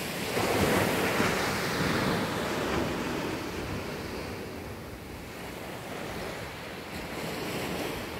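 Small ocean waves breaking and washing up a sandy beach: the surf swells about half a second in and slowly ebbs away, building a little again near the end. Wind rumbles on the microphone underneath.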